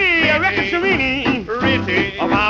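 1940s swing jazz record: a male voice singing in sliding, bending pitches over a small band with a steady bass.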